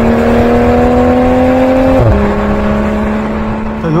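Toyota GR Supra's 3.0-litre turbocharged straight-six engine and exhaust pulling under acceleration. Its pitch rises slowly, then drops sharply about two seconds in at an upshift before holding steady.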